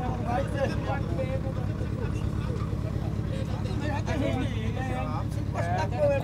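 Steady low hum of an idling vehicle engine, with people talking in the background.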